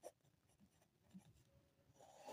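Faint scratching of a ballpoint pen writing a word on paper, a few light strokes.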